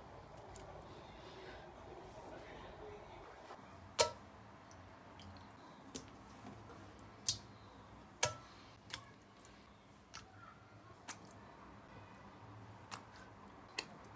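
Faint, scattered sharp clicks and taps over a low steady hush, the loudest about four seconds in. They come from raw chicken gizzards being handled and put piece by piece into a wok.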